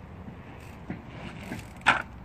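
Mountain bike hopped up onto a brick bench: a few light knocks, then one loud thud near the end as the wheel lands on the ledge.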